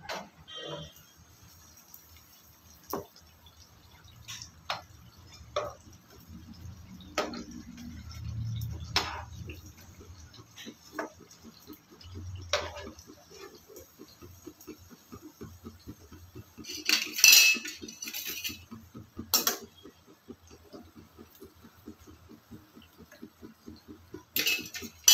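A perforated steel skimmer clinking, knocking and scraping against a non-stick frying pan as malpua are turned and lifted out of hot oil. The knocks are scattered, with a louder burst of clatter about three-quarters of the way through.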